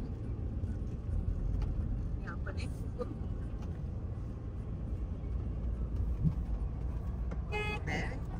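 Steady low road rumble of a moving car heard from inside the cabin, with a short horn toot near the end.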